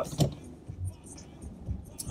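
Low rumble of a car's engine and running gear heard from inside the cabin.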